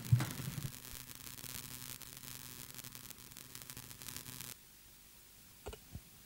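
Steady electrical hum and hiss from the hall's microphone and sound system. It cuts off suddenly about four and a half seconds in, leaving near silence.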